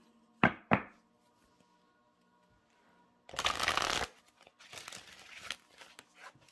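Oracle cards being shuffled by hand: two sharp taps about half a second in, then a dense riffle of cards lasting nearly a second in the middle, with softer card handling after it.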